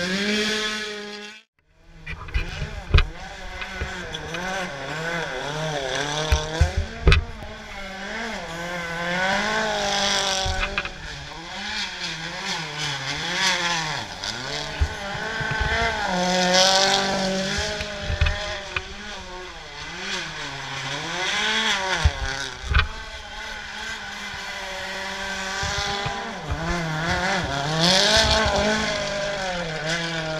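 Rally cars' turbocharged engines revving hard through a tight roundabout, the pitch climbing and dropping repeatedly as the drivers accelerate, shift and lift off, with a few sharp cracks about three and seven seconds in.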